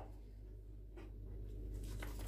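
Quiet room tone with a steady low hum, broken by a short click at the start and a fainter one about a second in.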